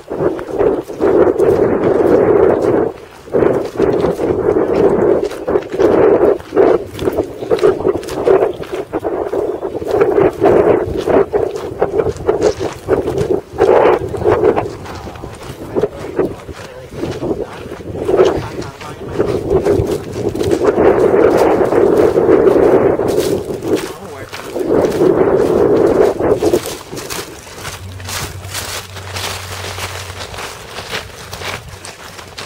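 Loud, irregular rubbing and buffeting on a handheld camera's microphone as its holder walks, with jacket fabric brushing against it. It comes in long swells and eases off near the end.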